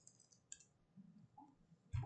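Near quiet with a few faint computer clicks from keyboard and mouse, a sharper click near the end.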